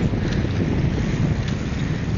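Wind buffeting a handheld camcorder's microphone while riding a bicycle: a steady low rumble, with a few faint clicks.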